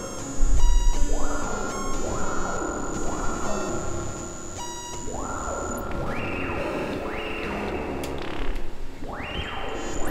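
Live electronic music from hardware synthesizers: a repeating pattern of notes, each sweeping upward in brightness as a filter opens, climbing higher in the second half, over a deep bass pulse that comes in about half a second in.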